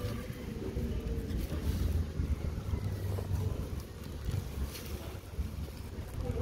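Wind buffeting a phone's microphone outdoors: a low, unsteady rumble.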